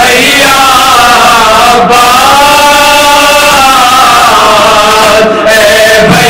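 Men chanting a Muharram noha, a Shia lament, together into a microphone in long, slowly bending held lines. The singing is loud throughout.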